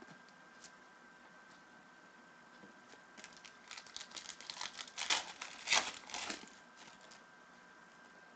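Panini Prizm trading-card pack wrapper being torn open and crinkled by hand: a run of quick crackles starting about three seconds in, loudest just before the sixth second, then dying away.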